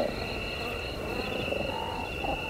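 Ambient film soundscape: low croaking, animal-like calls under two steady high tones that hold throughout.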